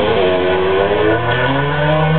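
Electric guitar playing sustained notes whose pitch slides upward.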